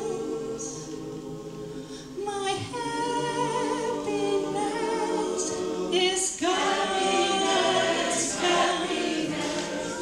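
Mixed choir singing in several-part harmony with no instruments heard, long held notes with slight vibrato. It drops softer, starts a new phrase about two and a half seconds in, and swells louder and fuller in the second half.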